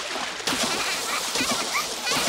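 Cartoon splashing of sea water, a fresh splash starting about half a second in, with brief high squeals from children's voices.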